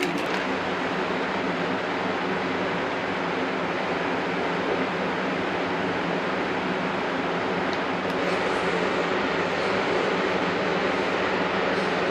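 Powder-coating equipment running: a steady rush of air with a low hum underneath, getting slightly louder about eight seconds in.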